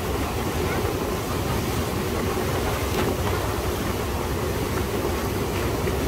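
Motorized outrigger boat (bangka) under way: its engine runs steadily with a low drone, over water rushing past the hull and outrigger.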